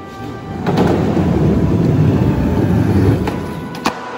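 Skateboard wheels rolling on a concrete floor: a loud, steady rumble from just under a second in until about three seconds in, with a sharp click near the end.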